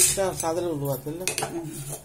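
Steel ladle clinking and scraping against a stainless steel pot while thick ragi dough is stirred, with sharp clinks at the very start and a few more in the second half.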